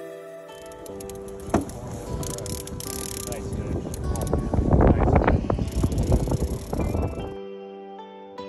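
Background music with a stretch of rough outdoor noise laid over it: water splashing and sloshing around a landing net, with wind on the microphone. The noise builds to its loudest just past the middle and cuts off suddenly near the end, leaving only the music.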